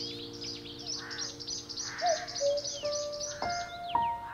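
Small birds singing in quick, high chirps, under slow, soft piano notes that enter about halfway through as an earlier held chord fades away.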